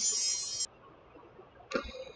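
A high, shimmering chime-like jingle that cuts off suddenly about half a second in, followed near the end by a brief light clink.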